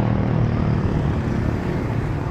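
Street traffic: a motor scooter's small engine running close by over a steady hum of passing traffic.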